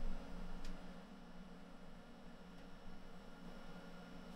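Quiet room tone: a steady faint low hum under a soft hiss, with one faint click a little over half a second in.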